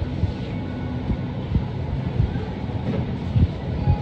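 Shopping cart rolling over a supermarket floor: a continuous low rumble of the wheels with irregular knocks and rattles, over a faint steady hum.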